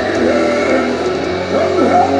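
Live rock band playing loud, distorted electric guitar with swooping pitch bends over a steady low bass note, with a singer's voice in the mix.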